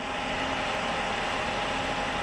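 Fan-type snow cannon running, a steady rushing blast of air and water spray with a faint steady hum from its turbine.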